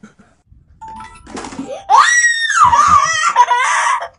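A child's high-pitched scream starting about two seconds in, sliding down in pitch and held to the end.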